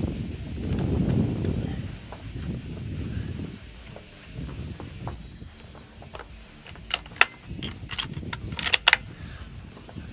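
Bolt-action rifle being loaded at a shooting bench: a quick series of sharp clicks and clacks in the last few seconds as a cartridge is taken from the box and the bolt is worked. A low rumble fills the first few seconds.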